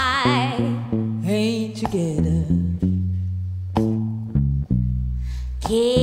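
Electric bass guitar playing a line of plucked low notes alone, between a woman's sung phrases: her held note with wide vibrato fades out about a second in, and her voice comes back in just before the end.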